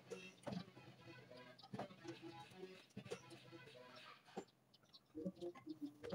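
Quiet garage background with faint distant voices, and about four light clicks and knocks spread through, from tools handled at a metal workbench.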